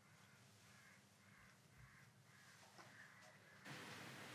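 Near silence: room tone with faint, distant bird calls repeating through it. The background hiss rises slightly near the end.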